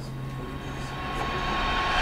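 A rising whoosh that swells steadily over about two seconds, over a steady low hum that fades out near the end.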